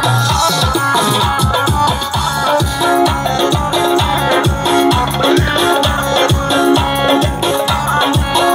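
Upbeat dance music played live on a Korg Pa-series arranger keyboard: a keyboard melody over a fast, steady electronic drum beat.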